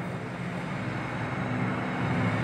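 Steady low background hum, with no distinct strokes or clicks.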